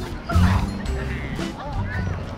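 Young women laughing and squealing over light background music.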